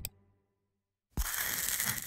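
Silence, then about a second in a sharp hit followed by a noisy rushing sound effect: the sting of an animated logo reveal.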